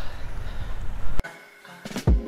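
Outdoor background noise with a low rumble of wind on the microphone that cuts off abruptly a little past a second in. Background music with a steady beat begins near the end.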